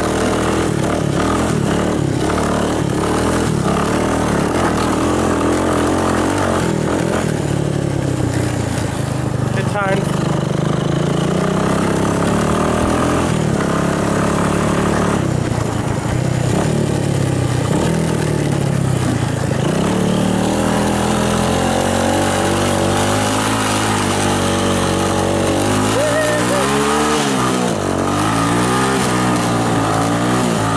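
Single-cylinder four-stroke engine of a 1984 Honda ATC 200S three-wheeler being ridden, revving up and down with the throttle, with a quick run of rises and falls near the end. It is running well, though the carburetor is flooding over a little.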